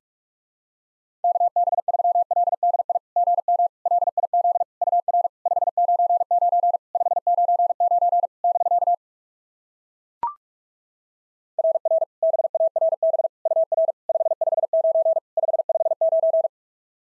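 Morse code at 45 words per minute: a single steady tone keyed rapidly on and off in two long runs, practice copy of a Summits on the Air contact exchange. About ten seconds in, between the runs, comes one short higher beep, the courtesy tone that marks the end of a segment.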